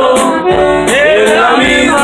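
Live norteño band playing a dance tune loud, a saxophone-style melody over a steady drum beat.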